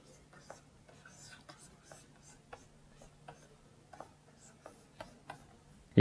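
Pen stylus scratching and tapping on a graphics tablet in quick short strokes as lines are hatched in. The strokes are faint and irregular, a few a second.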